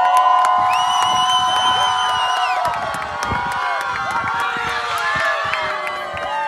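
A crowd of young girls screaming and cheering together, with long, high-pitched shrieks held and overlapping one another, in a victory celebration.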